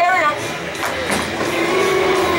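Bowling ball rolling down a bowling lane after its release, a steady rumble.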